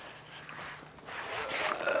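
Heavy awning canvas rustling as it is folded and handled, getting louder in the second half.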